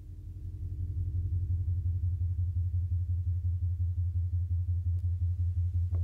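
Intro of a Nyahbinghi reggae track: a deep bass tone pulsing rapidly, fading in over the first second and then holding steady.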